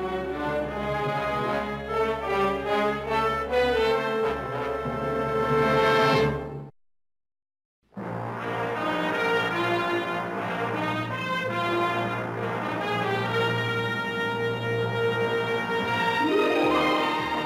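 Orchestral music with brass, swelling and then breaking off sharply about seven seconds in. After about a second of silence, an orchestral opening theme with brass starts.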